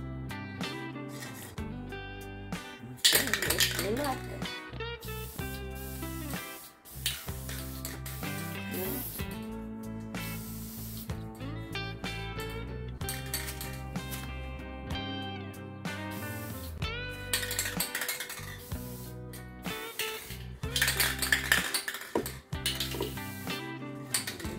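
Background music over a few hissing bursts from an aerosol can of gold metallic spray paint sprayed onto water. The loudest bursts come a few seconds in and near the end.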